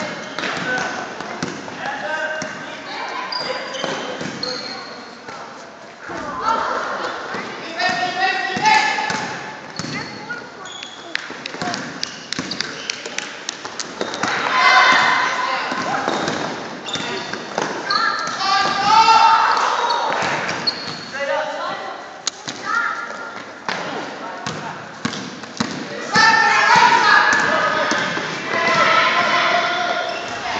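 A basketball dribbled, bouncing on a hardwood gym floor, with voices shouting and calling out, loudest about halfway through and near the end.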